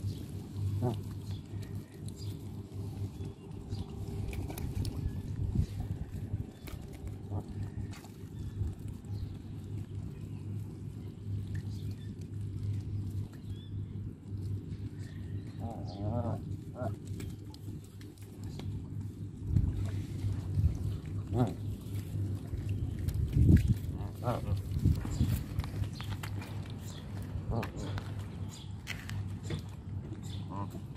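Canada geese giving a few short calls at intervals, with scattered clicks over a steady low rumble.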